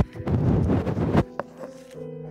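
Handling noise of a phone being set down: a knock, then about a second of rough rubbing against the microphone, ending in another knock.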